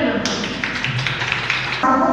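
A woman speaking into a microphone, her speech broken for about a second and a half by a crackly patter of taps that starts and stops suddenly.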